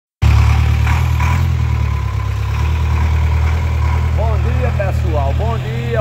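Ford F-4000 truck engine idling steadily with a deep, even rumble, while voices start up over it in the last two seconds.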